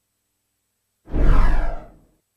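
A single whoosh sound effect starting about a second in, with a heavy low rumble, fading out over about a second.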